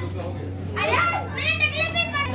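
Children's high-pitched voices calling out and chattering while playing, without clear words, louder in the second half, over a steady low hum.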